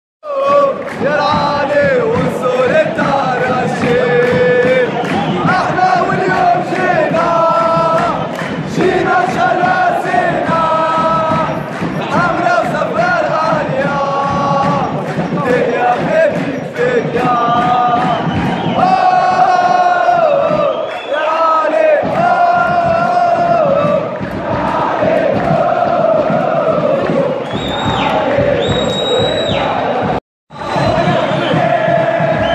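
A football ultras' crowd on the terrace chanting together, a sung chant of many male voices on long held notes, going on phrase after phrase.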